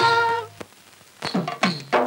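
A woman's long held sung note in a Tamil devotional film song ends about half a second in. After a short pause, hand-drum strokes start in a quick rhythm, their deep tones bending downward in pitch.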